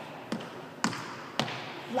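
Footsteps on a hardwood gym floor, a person stepping in time to a dance, one sharp step about twice a second.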